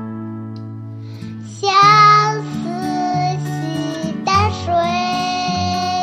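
Background music: a Chinese song with a sung melody over instrumental accompaniment. A held note fades out, then a new sung phrase begins about a second and a half in, and another follows near the end.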